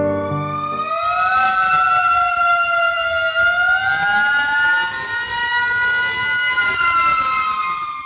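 Several fire engine sirens wail together, their pitches rising and falling slowly out of step with one another. They are sounded from parked engines as a tribute to fallen firefighters. Soft piano music fades out in the first second.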